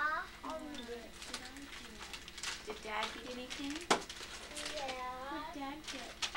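Young children's voices babbling and murmuring in short, wordless stretches, with a single sharp click about four seconds in.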